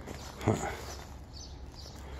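A man's short "huh" about half a second in, over a faint, steady outdoor background.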